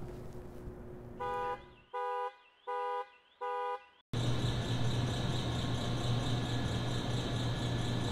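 A car horn sounds four short, evenly spaced honks. Then a loud steady droning sound with a low hum starts and holds to the end.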